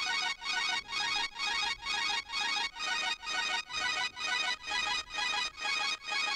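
A single synthesizer part playing back from a music project: short, bright chords pulsing evenly about twice a second with almost no bass, run through a Haas-delay stereo widener and auto-pan.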